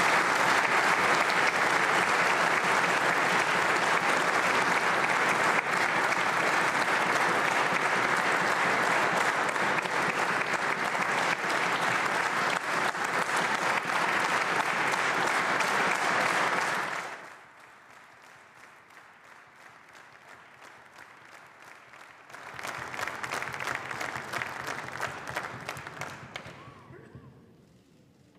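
Applause from the members of a parliamentary chamber, sustained and even, stopping fairly suddenly about 17 seconds in. After a few seconds of lull, a second, shorter round of applause rises and then fades out near the end.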